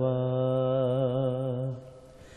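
A man singing a Bengali Islamic song (gojol) holds one long, slightly wavering note at the end of a line, then lets it fade out near the end.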